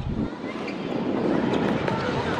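Faint outdoor ambience around a football court: a steady background hum with distant children's shouts and a couple of short taps.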